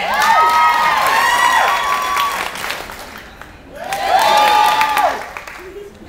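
Audience applauding and cheering, with several high voices whooping over the clapping. A loud burst in the first couple of seconds dies down, then a second wave of whoops rises about four seconds in and fades before the end.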